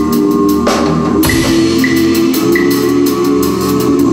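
Drum and bass music played by a band with an acoustic drum kit: steady quick hi-hat strokes over sustained keyboard chords, with a louder drum hit about a second in.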